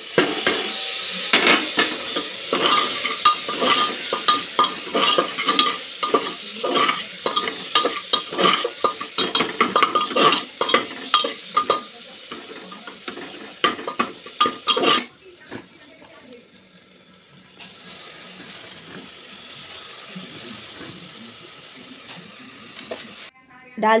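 Chopped tomatoes tipped into hot mustard oil in an aluminium pressure cooker, sizzling, while a metal slotted ladle scrapes and clinks against the pot as the mix is stirred. About fifteen seconds in the stirring stops, leaving a quieter steady sizzle.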